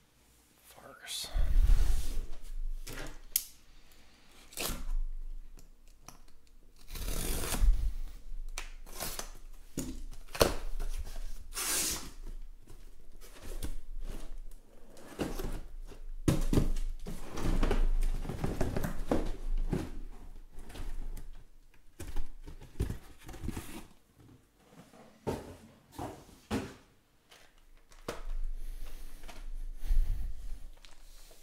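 A sealed cardboard shipping case being opened by hand. Tape and cardboard flaps rip in loud irregular tears, with knocks and scrapes as the wrapped card boxes inside are handled and set down.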